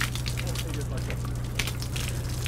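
A steady low hum under a dense crackling hiss, with faint voices in the background.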